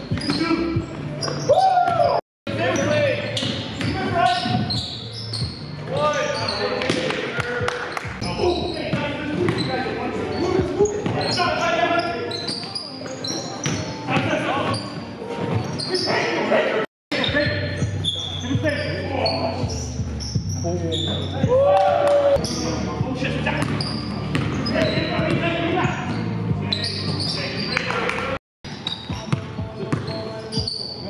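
Basketball being dribbled and bounced on a gym floor amid players' shouts and chatter, echoing in a large hall. The sound cuts out for a moment three times.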